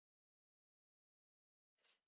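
Near silence: the audio track is essentially empty.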